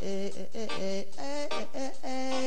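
A singing voice in a live acoustic song, holding long notes and sliding from one pitch to the next.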